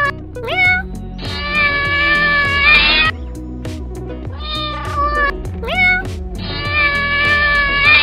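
Background music with a cat meowing over it: a short rising meow followed by a long drawn-out meow, the same pair coming again about halfway through.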